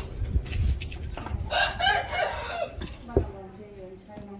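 A rooster crowing once, one call of a little over a second that rises and falls, with a single sharp knock about three seconds in.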